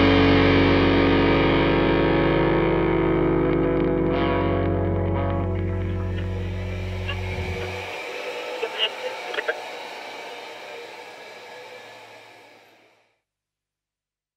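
The final chord of a rock song on distorted electric guitar, ringing out and slowly fading. About eight seconds in the low end cuts off, leaving a fading high wash with a few short clicks, and the sound dies away near the end.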